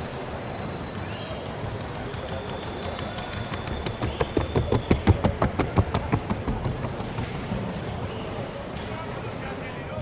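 Hoofbeats of a Colombian trocha mare gaiting across the wooden sounding board: a fast, even clatter of about seven strikes a second, loudest midway, from about four to seven seconds in, over a crowd murmur.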